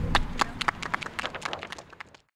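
A small group clapping, scattered claps that thin out and fade away.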